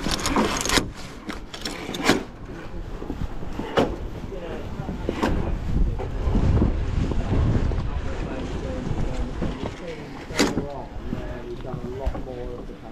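Footsteps and knocks of people walking on a roller coaster's wooden track walkway, sounding at irregular intervals, over a steady low rumble of wind on the microphone that swells for a couple of seconds mid-way. Faint voices can be heard near the end.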